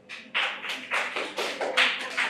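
A group of students clapping by hand, beginning about a third of a second in.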